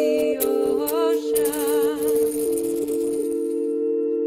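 The chant's last sung notes, wavering with vibrato, die away about a second in over a steady drone of two held notes. A rattle or shaker is shaken continuously and fades out near the end.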